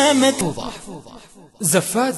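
A man's voice reading out the digits of a phone number, with a brief pause a little past the middle.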